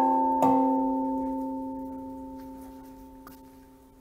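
Metal temple bell above the hall's entrance, rung by swinging its striped rope. A strike about half a second in adds to the ringing of the one just before. The bell's steady, several-pitched tone then fades away slowly over about three seconds.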